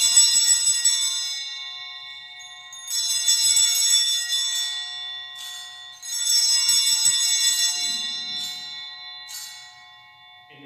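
Altar (sanctus) bells, a hand-held cluster of small bells, rung three times about three seconds apart. Each ring is a bright jangle that slowly fades, with a few short extra shakes between. The three rings mark the priest's elevation at the consecration.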